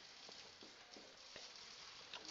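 Near silence, with faint taps and scratching from a marker writing on a whiteboard.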